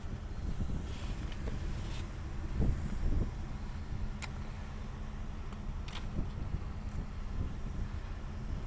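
The Impala SS's 5.3-litre V8 idling, a steady low hum heard from inside the cabin, with a few light clicks.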